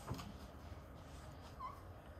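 Quiet room tone during a pause in speech, with one brief faint squeak about a second and a half in.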